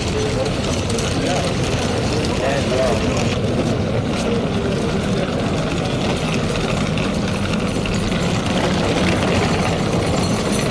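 Indistinct voices over a steady, loud background din, with no clear words and no single event standing out.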